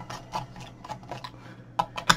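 Light, scattered clicks and taps of the hard plastic back housing of an AcuRite Atlas touchscreen display being handled, with a sharper click near the end.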